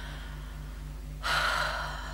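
A woman's audible in-breath: a short breathy intake, under a second long, starting a little past halfway. A steady low electrical hum runs underneath.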